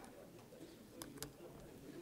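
A quiet room with a faint murmur of voices, broken by sharp little clicks from something handled on a lectern near its microphone: one at the very start and two close together about a second in.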